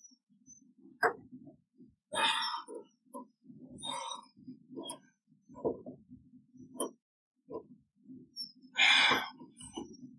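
Hand pop-rivet tool squeezed several times to set a blind rivet in the convertible's flap trim: a series of short clicks and rasps as the handles work the mandrel. Near the end comes a loud breath of effort.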